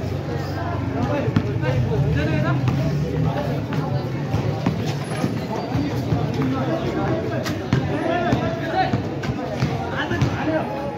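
Voices of players and spectators talking and calling out around an outdoor concrete basketball court during live play, over a steady low hum, with a few sharp knocks of the basketball bouncing on the concrete.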